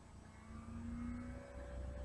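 Faint engine drone whose pitch rises slowly over about two seconds, above a low steady hum.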